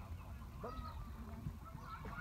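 Domestic fowl honking: a few short calls, about half a second in and again near the end, over a low steady rumble.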